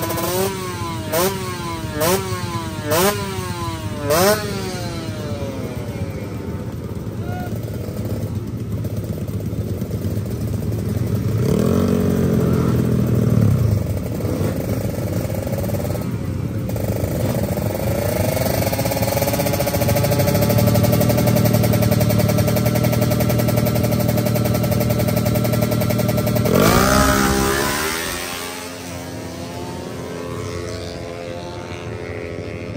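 Racing motorcycle engines: one bike is blipped five times in quick succession, about one rev a second, then engines are held at high revs, and near the end one launches with a sharp rising note that quickly fades away down the strip.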